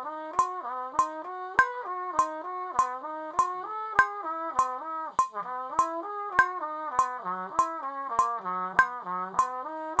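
Muted trumpet playing a technical study in a flowing run of smoothly connected notes that step up and down in a repeating pattern. A metronome clicks steadily under it at about 100 beats a minute.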